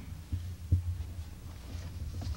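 Low, dull thuds over a steady low hum, with two stronger thuds about a third and three quarters of a second in.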